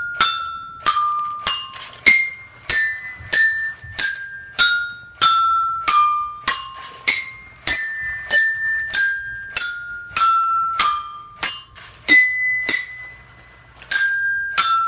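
Dash robot's toy xylophone accessory struck by its mallet arm, playing a programmed tune one note at a time, a little under two notes a second, each note ringing briefly and the pitch stepping up and down. The notes pause for about a second near the end.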